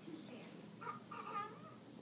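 A cat meowing once, about a second in.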